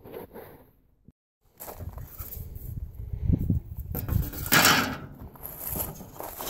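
A thin painted sheet-metal panel being picked up and handled on a wooden table, scraping and rattling irregularly, with the sharpest clatters about four to five seconds in.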